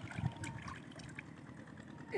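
Faint water lapping and trickling, with a soft low thump about a quarter second in.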